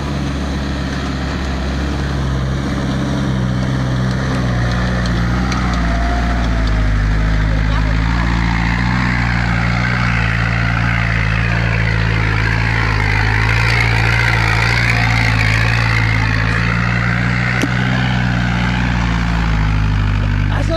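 Mitsubishi Delica 4x4 van's engine running steadily as the van drives slowly over a dirt track up to and past the camera, growing louder over the first several seconds as it comes close.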